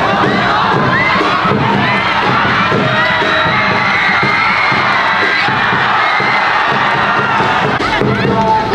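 Football crowd shouting and cheering, many voices overlapping, swelling into a held shout around the middle as a shot goes in on goal.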